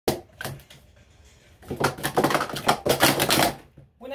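Plastic sport-stacking cups clattering rapidly for about two seconds as a 3-6-3 sequence is stacked up and down at record speed. A few sharp clicks come first, near the start, before the run.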